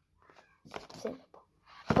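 Soft handling of a shrink-wrapped card deck box, with a faint murmur of a voice in the middle, and speech starting right at the end.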